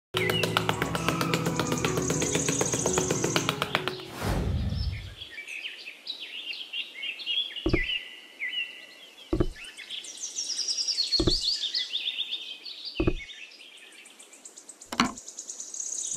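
Music for the first four seconds, ending in a falling whoosh. Then birdsong chirping, with five sharp knocks spaced evenly about two seconds apart.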